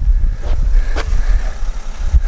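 Wind buffeting the microphone of a handheld camera: an uneven low rumble with no clear engine tone.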